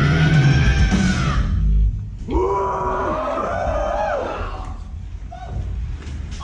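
A live band ends a loud song, its final chord and a long held high note cutting off about a second and a half in. Audience members then yell and cheer for about two seconds.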